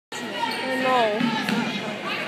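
Basketball being bounced on a hardwood gym floor, with a sharp knock about one and a half seconds in, over players' voices calling out on the court.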